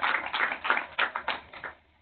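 A small audience applauding at the close of a talk, a dense patter of hand claps that dies away near the end.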